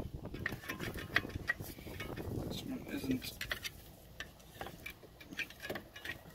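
Light metallic clicks and clinks of steel-backed brake pads knocking against the rear brake caliper and its bracket as they are worked loose by hand. The taps come thick for the first few seconds, then thin out.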